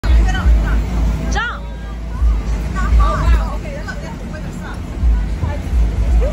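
Young children's voices chattering and calling, with one high-pitched squeal about a second and a half in, over a heavy low rumble that swells and fades.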